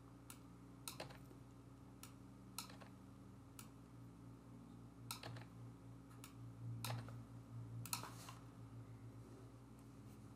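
Faint computer keyboard keystrokes and mouse clicks, about ten scattered single clicks, over a low steady hum.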